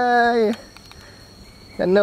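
A steady, high-pitched insect drone in the forest background, with a cheerful drawn-out Thai 'yay' (เย้) called out in the first half-second and a short spoken 'sanuk' ('fun') beginning near the end.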